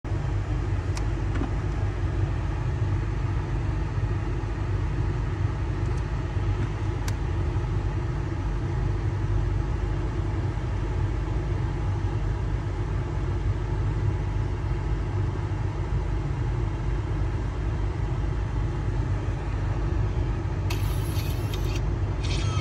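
Steady low rumble of a car engine idling, heard inside the cabin, with a few faint clicks.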